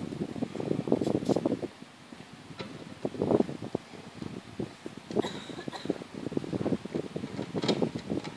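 Wind buffeting the microphone in uneven gusts, a low fluttering rumble that comes and goes, with a few faint clicks.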